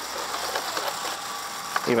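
Cordless drill running steadily, turning a Gator Grip universal socket on a wing nut.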